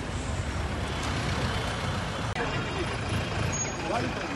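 Army vehicle engine running with a steady low rumble, with brief voices in the second half.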